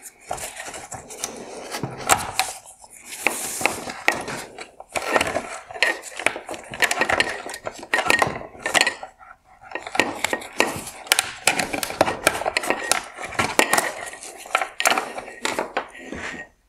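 Plastic wire-harness connectors and wiring being worked loose from a car headlight's projector by hand: a steady run of sharp plastic clicks and clacks with rustling of wires in between.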